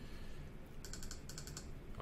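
A quick run of computer mouse clicks, bunched together for under a second about halfway through: repeated clicking to step a font size up.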